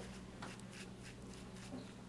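Faint scratching and rustling as a pen is poked into peat-and-perlite potting mix in a paper egg-carton cell to make a planting hole, over a low steady hum.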